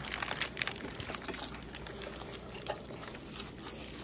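Rustling and scattered light clicks of handling: a cotton sleeve brushing the camera's microphone while things on the table are moved.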